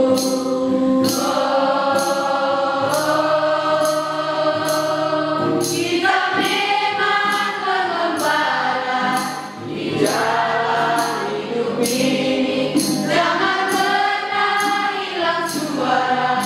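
Mixed school choir of boys and girls singing in long held notes that slide from pitch to pitch, with an acoustic guitar accompanying. A light percussive tick keeps a steady beat about twice a second.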